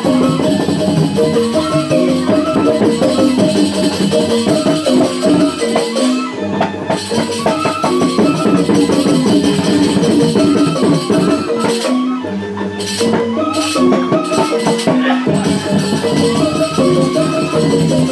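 Balinese gamelan music playing steadily: quick runs of ringing metallophone notes over a busy, rattling percussion layer.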